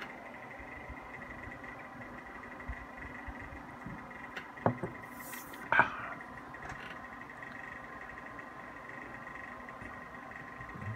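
A quiet room with a faint steady hum. About halfway through comes a sip of beer: a sharp click, then a short hiss and a brief swallow.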